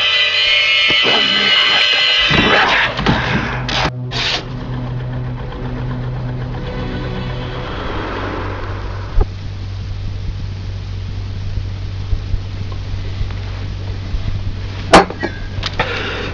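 Music that stops about two and a half seconds in, giving way to a low, steady mechanical hum with scattered clicks and a sharp knock near the end.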